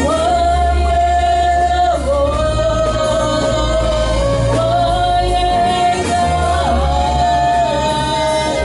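A woman singing a worship song in long held notes, each about two seconds, over a live band with keyboard and a strong steady bass.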